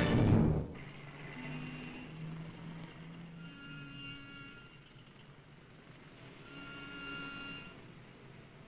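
Orchestral film score: a loud final chord cuts off under a second in, then quiet underscore of soft held notes in phrases.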